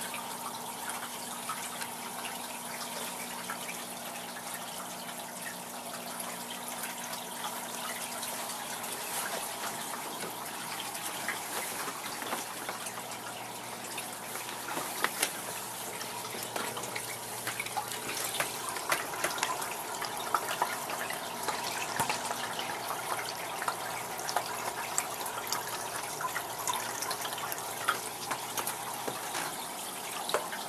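Aquarium water circulating steadily, with a faint hum underneath and frequent small drips and pops, which come more often in the second half.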